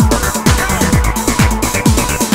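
Early-1990s acid techno track: a steady kick drum, each hit dropping sharply in pitch, a little over two beats a second, with ticking hi-hats and curling synth lines above.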